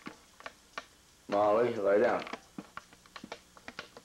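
A small dog's claws clicking on a ceramic tile floor as it walks, a scatter of light, sharp ticks that come thicker in the second half. The loudest sound is a brief voice with a wavering pitch, about a second long, just before the middle.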